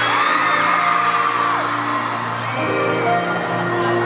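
A live pop band plays sustained chords over a steady low note in an arena. High screams and whoops from the crowd rise and fall over the music.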